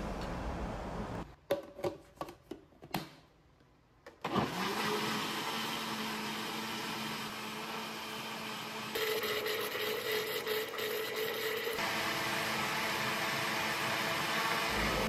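A countertop blender's motor running steadily as it blends a liquid carrot, egg and oil cake batter. It spins up about four seconds in after a few clicks and a brief quiet, and its hum changes pitch twice, at about nine and twelve seconds.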